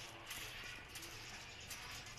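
Hand-held trigger spray bottle misting water onto mung bean sprouts in a plastic tray: a few quick, faint spritzes of hiss, one after another.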